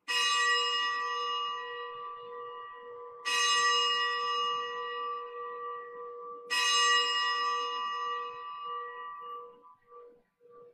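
A bell struck three times, about three seconds apart; each stroke rings out with several steady tones and dies away slowly. It is the consecration bell rung at the elevation of the host in the Catholic Mass.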